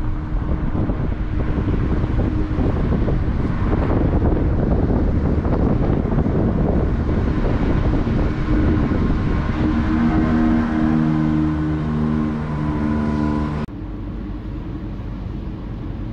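A vehicle driving along a city street, with loud rough road and engine noise. From about ten seconds in, several steady tones sound together and shift in pitch, then the sound changes suddenly to quieter, smoother vehicle noise near the end.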